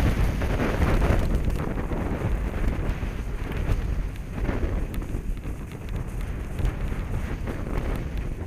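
Wind buffeting a helmet-mounted camera's microphone as the skier moves downhill, a steady low rumble, with the hiss of skis sliding over groomed snow.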